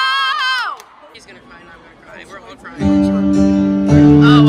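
A long, high-pitched shout of "No!" breaks off within the first second, followed by a quieter pause with faint crowd noise. About three seconds in, live stage piano and acoustic guitar begin a sustained opening chord.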